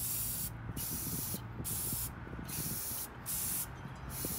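Aerosol spray paint cans hissing in about five short bursts, each well under a second with brief gaps between, as paint is sprayed onto the surface of water in a tub.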